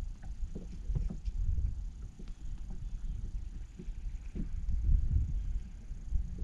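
Low, steady rumble of wind and water around an open fishing boat, with scattered light clicks and taps from handling the rod and a freshly caught crappie.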